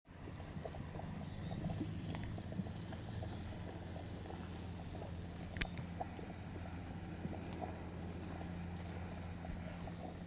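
Hot grey mud in a volcanic mud pot bubbling, with many small irregular plops and pops as gas bubbles burst at the surface.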